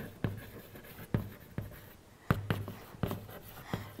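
Chalk writing on a chalkboard: a quiet run of irregular taps and scrapes as letters are written, with a brief pause about two seconds in.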